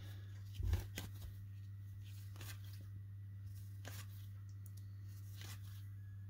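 Trading cards being flipped through by hand, the card stock making about half a dozen faint, irregular slides and snaps as the cards move through the stack, over a steady low hum.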